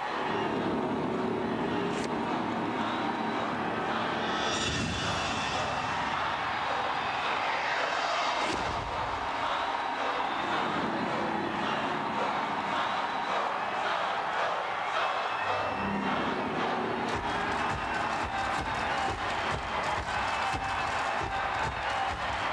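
Music and sound effects from the soundtrack of a TV promo for an animated series, dense and continuous, with sweeping effects about four and eight seconds in.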